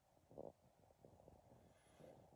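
Near silence: room tone, with one faint, short low sound about half a second in.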